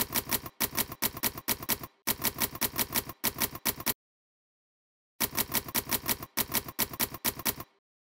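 Manual typewriter keys striking in quick runs of clicks, several a second, with a pause of about a second midway before a second run of keystrokes.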